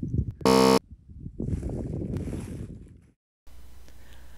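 A short, flat electronic buzz about half a second in, louder than anything else. It is followed by wind rustling on the microphone that fades away, then a cut to quieter steady outdoor background noise.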